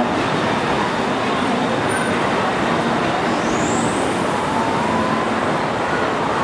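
Steady, even background din of a crowded mall atrium, with no talking from the stage.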